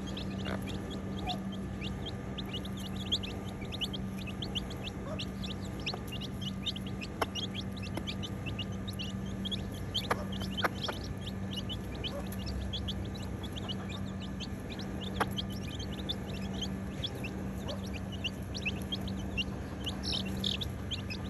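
A group of chicks peeping continuously as they feed: many short, high, falling peeps overlapping at several a second, with a few louder calls now and then.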